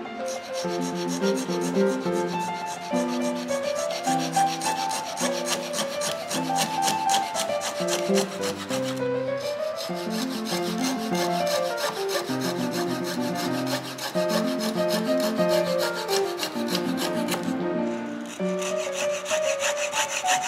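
Fine-toothed fret saw cutting a slot into a small strip of wood with quick, even back-and-forth strokes. The sawing pauses briefly twice. Background music plays throughout with held, stepping notes.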